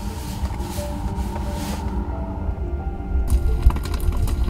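Music playing over the car's speakers with held notes. About three seconds in, the crackle of a log fire starts: the Tesla's virtual fireplace (Romance Mode) sound effect, switched on from the touchscreen.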